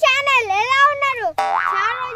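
A child's high-pitched, sing-song voice with long, drawn-out syllables, broken about one and a half seconds in by a short rising comic sound effect.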